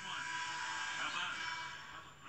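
Basketball arena crowd noise, a steady murmur of many voices, from game footage heard through a television speaker.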